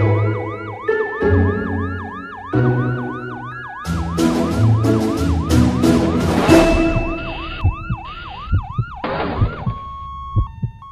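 An ambulance siren wails up and down in a quick repeating cycle, about two to three times a second, over music with sustained chords. Bright percussive strikes join about four seconds in, and short low thumps come near the end as the siren stops.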